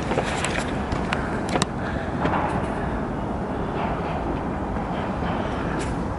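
Wind buffeting the camera's microphone at a high open lookout, making a steady, uneven rumbling noise. There are a few sharp clicks in the first couple of seconds as the camera is handled.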